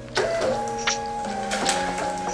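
Small desktop label printer feeding out a packing slip, over background music.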